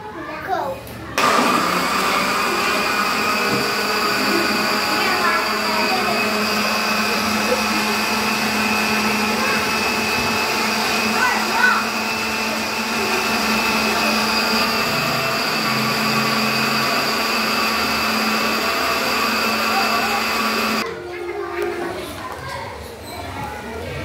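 Electric countertop blender switched on about a second in, running steadily as it purées watermelon chunks into juice, then switched off shortly before the end.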